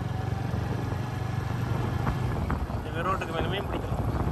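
Motorcycle riding at a steady speed, a low steady rumble of engine and road.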